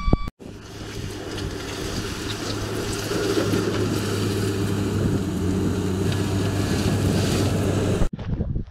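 Telehandler's diesel engine working under load as the machine pushes a heap of stone along the track with its front bucket, getting gradually louder as it comes closer.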